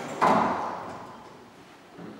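Otis Series 5 elevator's sliding doors closing, meeting with a sudden thud about a quarter second in that fades away over about a second.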